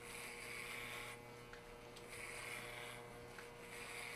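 Corded electric hair clippers humming faintly as they shave a head close to the scalp, with three rasping passes through the short hair, each about a second long.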